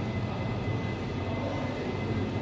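Steady low hum of supermarket refrigeration and ventilation, with a thin steady high tone running through it.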